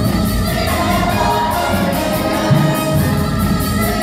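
A large musical-theatre cast singing together in chorus with musical accompaniment, heard from out in the audience.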